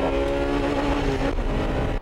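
Honda Integra Type R's B18C 1.8-litre VTEC four-cylinder engine heard from inside the cabin under hard acceleration on track, holding a steady high note.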